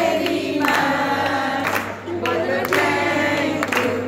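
A group of women singing together in chorus, clapping their hands in time.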